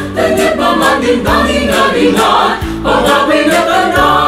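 Mixed choir of men and women singing together.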